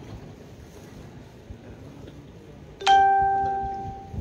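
A single loud bell-like chime about three seconds in: one clear ringing tone that strikes suddenly and fades away over about a second.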